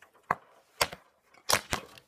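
Sharp snapping clicks, four in about a second and a half, as the SLA battery connector is plugged into an APC Smart-UPS 700: the arcing spark of the UPS's capacitors charging as the battery connects.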